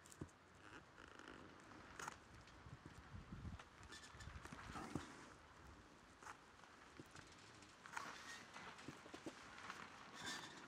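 Near silence with a few faint clicks and rustles from a hot glue gun being worked against the turkey feathers and grooved wooden handle of a feather fan.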